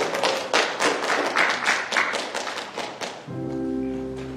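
A worship band's acoustic guitar and keyboard playing: an even run of sharp, percussive strokes, about four to five a second, then held chords ringing out from about three seconds in.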